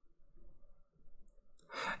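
A man's faint breathing, ending in a louder in-breath near the end just before he speaks.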